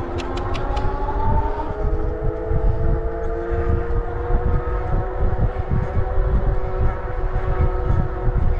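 Motorcycle engine pulling steadily, its pitch rising slowly as the bike gains speed, under heavy wind buffeting on the microphone. A few quick clicks come in the first second.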